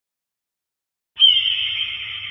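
A logo sting sound effect: silence, then about a second in a single sudden high-pitched hit that fades away slowly.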